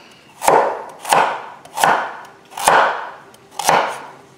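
A chef's knife slicing carrots on the bias, striking a wooden cutting board: five crisp cuts, each a sharp knock that fades quickly, about one every second or less.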